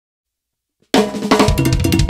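Silence, then about a second in a drum kit and Latin percussion (timbales and congas) start playing together suddenly and loudly: a quick run of drum hits with cymbals.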